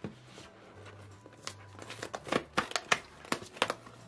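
Clear plastic blister packaging crinkling and crackling as a toy's clamshell is pried and pulled off its cardboard backing card. The sharp, irregular crackles grow busier from about halfway.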